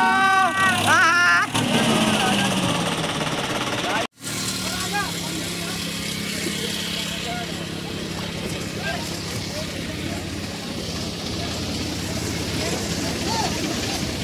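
Tractor diesel engines running steadily, heard with rushing water from a tractor standing in a river. A high voice is heard at the start, and there is a brief dropout about four seconds in.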